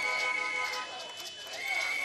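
A protester's whistle blown in long, steady, high blasts, one at the start and another near the end, over the noise of a street crowd.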